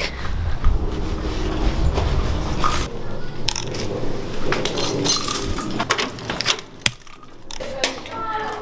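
Wind buffeting the microphone for about three seconds, then a run of metallic clicks and jingles as a bunch of keys lands on a concrete walkway, with footsteps and a sharp click about seven seconds in.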